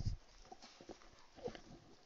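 Quiet room with a low thump at the start, then a few faint, irregular knocks.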